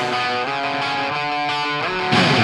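A quiet breakdown in a rock song: a guitar plays alone, with no drums or bass, sounding a few held chords that change about every half second.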